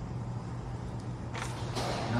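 Steady low background hum, with two short breathy rushes of noise about a second and a half in.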